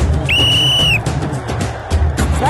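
A single whistle blast, one steady high tone lasting under a second, marking a point scored in the kabaddi match. Background music with a steady beat plays throughout.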